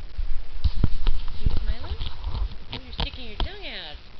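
Scottish terrier chomping at the air: a string of sharp teeth clacks from her snapping jaws, close up.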